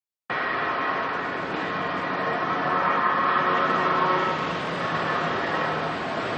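Steady street traffic noise that cuts in abruptly just after the start.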